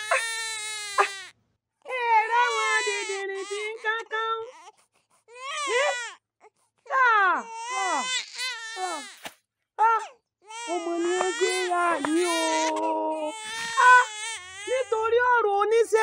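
A baby crying loudly in long, high, wavering cries of one to three seconds each, broken by short pauses for breath, with a woman's exclamations in between.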